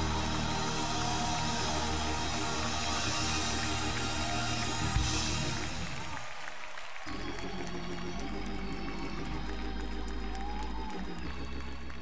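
Live gospel choir and band music with applause mixed in. About six seconds in, the low end drops out briefly, and a held chord then carries on.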